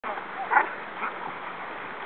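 A dog barking: one short bark about half a second in and a softer one about a second in, over a steady background hiss.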